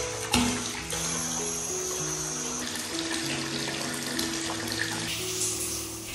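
Water running from a chrome bath spout into a filling bathtub: a steady rushing pour. A single sharp knock comes about a third of a second in.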